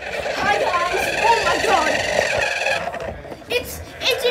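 Small electric motor of a homemade toy truck whining steadily as it drives, with indistinct voices over it; the whine eases off near the end.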